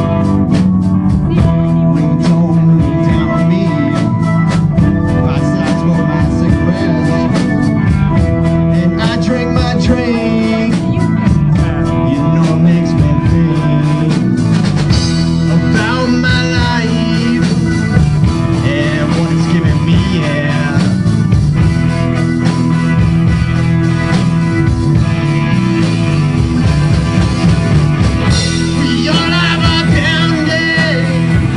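Live rock band playing a song: electric guitars over a drum kit, with steady cymbal strikes through the first half.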